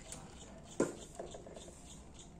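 Handling noise from a battery-powered fly-repellent fan: one sharp knock a little under a second in as the fan is handled and set in place, otherwise only a faint background.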